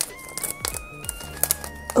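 Soft background music: a simple melody of held, high notes stepping up and down. A few faint crinkles come from a foil blind-box bag being handled.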